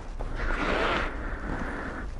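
A soft rustling swish that swells about half a second in and fades again within a second, over a faint low rumble.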